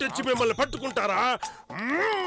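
Wordless vocal groans and grunts in quick arching bursts, ending in a steep rising cry.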